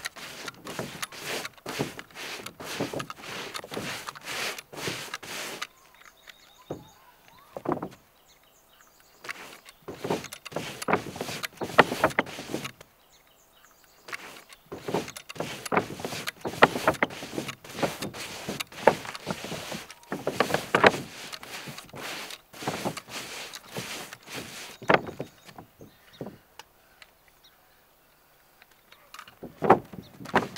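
Long-handled brush spreading roofing tar over a trailer roof: runs of quick scraping strokes a few seconds long, broken by short pauses.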